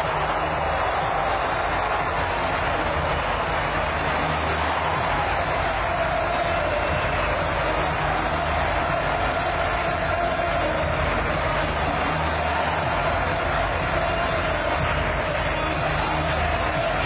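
Football stadium crowd cheering a home goal, a steady wall of many voices with no letup.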